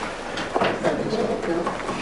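Indistinct low voices murmuring, with no clear words.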